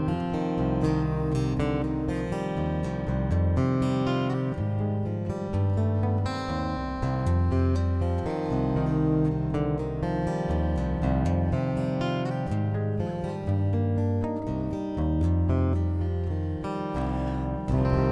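Yamaha Silent guitar, hybrid-strung with extra G and D strings and tuned C C F C E♭ G, played as a solo instrumental: a ringing plucked melody over repeated low bass notes, with a rich, haunting sound.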